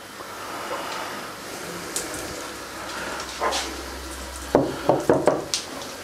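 Pieces of dry reef rock being handled and set into an empty glass aquarium, with rustling and a few light clicks, then a run of short knocks about four and a half seconds in as the rock meets the glass bottom and the other rocks.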